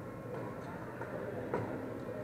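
Badminton doubles rally: a few light hits and footfalls over the steady background din of an indoor sports hall, the sharpest about one and a half seconds in.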